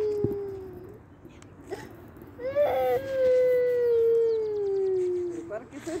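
A young boy crying: a long drawn-out wail that slowly falls in pitch, starting about two and a half seconds in and lasting nearly three seconds, after an earlier wail dies away near the start.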